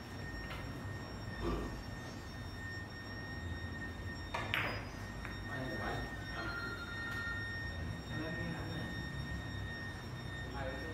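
Billiard hall room sound: a low background of distant voices and a faint steady high tone, broken by a few sharp clicks. The loudest click comes about four and a half seconds in.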